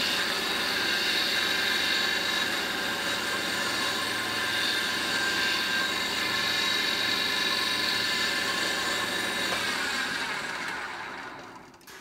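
Benchtop pillar drill motor running steadily at speed while a pilot hole is drilled into a softwood block, then winding down and fading out near the end as the drill slows.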